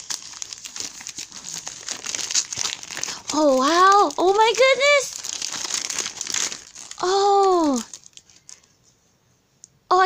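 Gift-wrapping paper crinkling and tearing as a present is torn open. A high voice twice lets out drawn-out, wordless exclamations, about three and seven seconds in, and the rustling dies away about eight seconds in.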